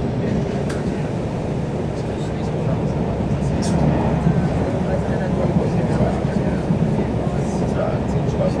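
Train running along the track, heard from inside the carriage: a steady low rumble of wheels and running gear, with a few short high clicks.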